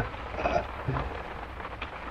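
A person's laughter trailing off softly, then quiet room noise with a low steady hum.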